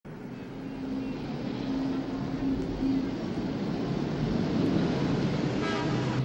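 A car engine and tyres approaching and getting louder as a police patrol car drives up close, with the general noise of street traffic.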